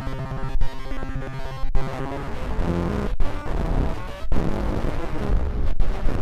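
Circuit-bent voice recorder looping a recorded sound through a modified voice-modulator circuit, giving buzzy, pitch-shifted electronic noise. The loop restarts with a brief cutout roughly every second and a quarter, and the sound turns rougher and lower about two seconds in.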